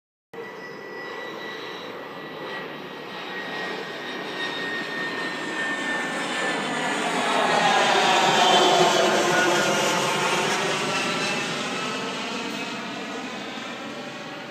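A twin-engine jet airliner flying low overhead. Its engine noise swells to a peak about eight or nine seconds in, then fades as it passes, with a faint high whine in the rush.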